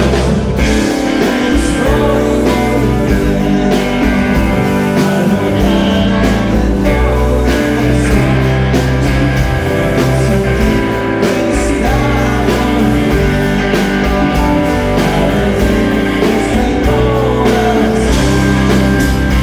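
A live rock band playing: acoustic and electric guitars, electric bass and drums, at a steady, full level.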